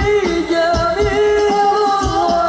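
Live Islamic devotional sholawat singing in Arabic: voices carry a long, slowly gliding melodic line over steady low drum beats.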